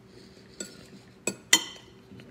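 Metal fork clinking against a ceramic bowl while eating: three short clinks, the last and loudest near the end with a brief ring.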